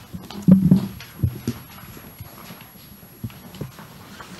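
Meeting-room quiet with two brief low voice sounds in the first second and a half, then a few light knocks or taps on the table.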